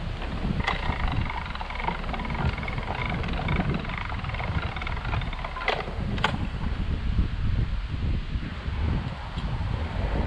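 Canal lock paddle gear being wound with a windlass: the ratchet clicks evenly for several seconds, then two sharp metallic clacks come about half a second apart, a little before the middle. Wind buffets the microphone throughout.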